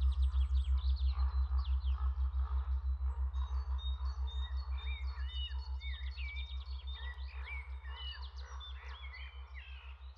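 Meditation soundtrack: a low pulsing hum, about six pulses a second, under recorded birdsong with many quick chirps and whistles. Both fade out slowly together.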